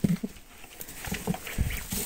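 Young ducklings moving about on fresh straw bedding, giving scattered soft thumps and rustles and a few faint peeps.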